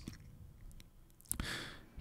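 A person's short intake of breath, about half a second long, near the end, after a faint mouth click; before it, near-quiet.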